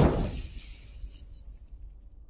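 Logo-reveal sound effect: a loud noisy hit fading away over about a second and a half, with a high fizzing sparkle dying out near the end.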